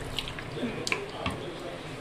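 Water poured from a plastic bottle into a pot of chopped onions, tomatoes and whole spices, with a few light clicks.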